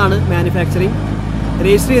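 The Mercedes-Benz W123 200D's four-cylinder diesel engine running steadily while the car drives, heard as a low drone inside the cabin. A voice is louder than the engine over it.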